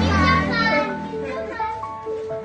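A group of young children's voices calling out together, mostly in the first second, over background music with long held notes that carries on after the voices fade.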